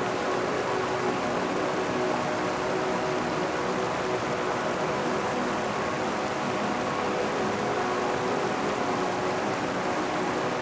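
River current rushing steadily past a concrete slab bridge, an even, continuous wash of water.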